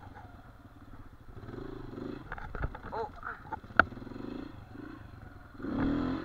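Dirt bike engine running at low revs as the bike rolls slowly over rough trail, with a few knocks and clatter from the bike and one sharp knock a little past the middle. The engine gets louder briefly near the end.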